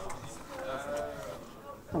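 A faint, drawn-out vocal sound from a person in the classroom, its pitch rising and then falling, lasting about a second.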